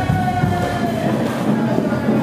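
Marching band brass holding one long sustained note that sags slightly in pitch near the end.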